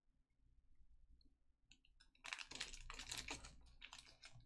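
Near silence, then about two seconds in a short burst of rapid typing on a computer keyboard, with a few more keystrokes near the end.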